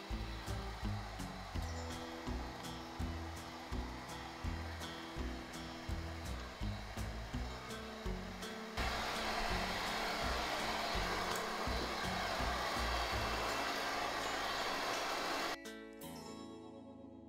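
Handheld hair dryer blowing steadily while hair is brushed into a pompadour, over background music with a steady beat. The dryer becomes much louder about nine seconds in, then cuts off suddenly just before the end.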